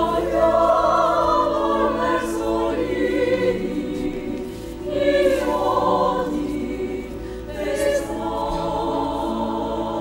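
Opera chorus singing with orchestral accompaniment in a live stage performance, many voices together. The loudness swells and falls with the phrases, easing briefly about halfway through and again a couple of seconds later.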